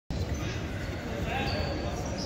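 Indistinct voices of spectators and officials echoing in a gymnasium over a steady low rumble.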